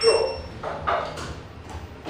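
Arrival chime of an Otis Gen2 lift: a single short, high ping right at the start, as the car reaches its floor.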